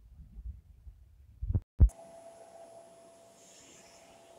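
Something rubbing and bumping right against the microphone: low rumbling with a few soft knocks, then one sharp loud thump just under two seconds in. After it, only a faint steady electronic hiss with a thin hum remains.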